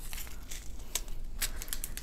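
Small plastic bags of diamond-painting drills crinkling as they are handled, with a few sharp little clicks.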